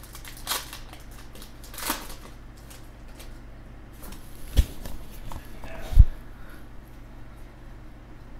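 A Pokémon booster pack's foil wrapper crinkling as it is torn open, followed by the rustle and slide of trading cards being handled. Two dull thumps, the loudest sounds, come about four and a half and six seconds in.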